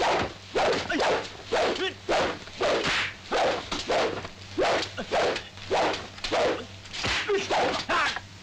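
Kung fu film fight soundtrack: a fast, even run of punch and swish hits mixed with short shouted grunts from the fighters, about two blows a second.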